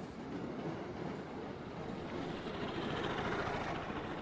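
A motor scooter passing along the street: its engine and road noise grow over about three seconds and begin to ease off near the end.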